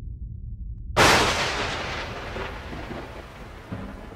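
Logo-sting sound effect: a low rumble, then about a second in a sudden loud impact hit that fades away slowly over the next few seconds.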